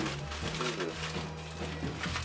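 Clear plastic bags holding plastic model kit parts crinkling as they are handled and lifted out of the box, over background music with steady low held notes.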